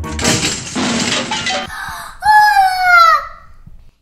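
A loud crash of breaking, like glass shattering, lasting about a second and a half, followed by a high cry that falls in pitch.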